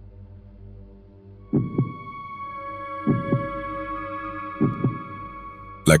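Dark ambient music: a low drone, then from about a second and a half in a heartbeat sound effect, three double thumps about a second and a half apart, under a held chord of steady tones.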